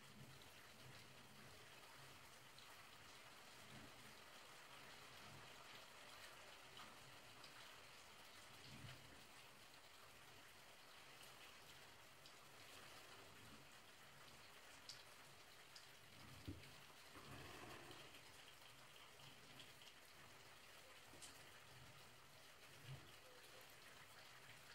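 Near silence: a faint steady hiss with a few soft, scattered clicks.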